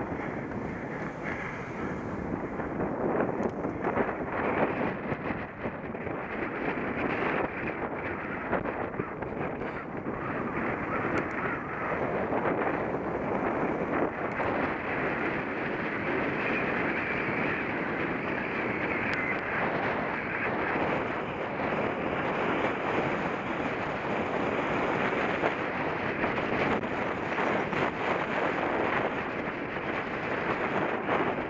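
Steady wind noise buffeting the microphone of a camera on a bicycle riding along a path, with no pauses.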